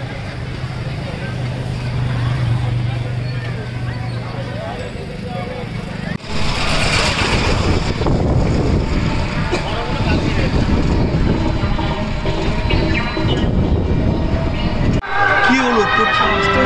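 Busy street sounds: a steady low engine hum at first, then, after a sudden jump in level about six seconds in, louder traffic noise and crowd voices heard from a moving vehicle.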